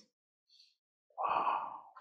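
A man's long, breathy sigh beginning about a second in and fading away: a contented sigh acting out the peace of sitting down to meditate.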